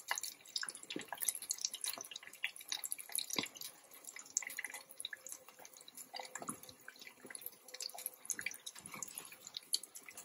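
Potato-flour-coated chicken pieces deep-frying in hot oil in a pot: a dense, irregular crackling and popping.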